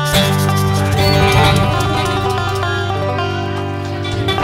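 A live bluegrass band (acoustic guitars and upright bass) strikes a chord together at the start and lets it ring out, slowly fading. This is typical of the song's closing chord.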